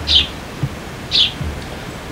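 A young hand-raised sparrow chirping twice, two short high chirps about a second apart.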